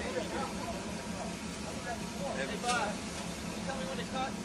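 Jeep Wrangler engine running at low crawling speed over rock, under faint voices. A single sharp knock comes a little before the end.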